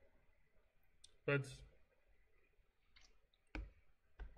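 A few short, sharp clicks in a quiet room, the loudest about three and a half seconds in, around a single spoken word.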